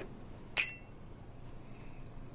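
Two glass tumblers clinked together in a toast: one sharp glass clink about half a second in, ringing briefly before it fades.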